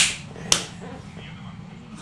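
Two sharp hand smacks, about half a second apart near the start, the first the louder.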